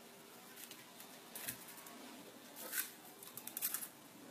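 Faint clicks and rustling of 16-gauge copper wire being bent and handled by hand, with a quick cluster of small clicks near the end.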